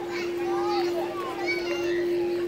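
Children's voices chattering and calling in short bending phrases, over a steady hum.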